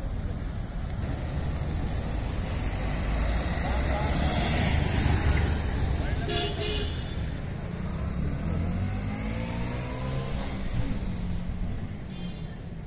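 Motor scooter passing close by, its engine noise swelling to its loudest about halfway through, over a steady low rumble.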